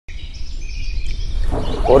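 Birds chirping in the background over a low steady rumble; a man starts speaking near the end.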